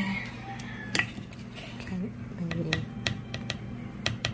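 Metal parts of a stovetop moka pot clinking and tapping against each other and the counter as the pot is taken apart and its filter basket handled, a string of about eight sharp clicks.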